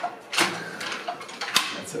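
Three short, sharp clicks spread over two seconds, with faint laughter and voices between them.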